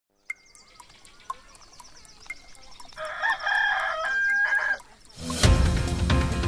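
A clock ticking about four times a second, then a rooster crowing once for about two seconds; theme music starts loudly near the end.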